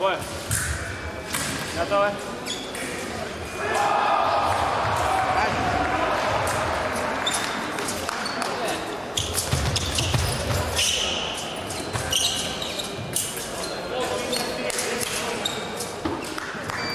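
Fencers' feet stamping and thudding on the piste during a bout, with repeated sharp knocks, echoing in a large sports hall over background voices.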